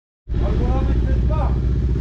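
A vehicle engine running steadily at idle with a low, even pulse, starting about a quarter second in, with a man talking over it.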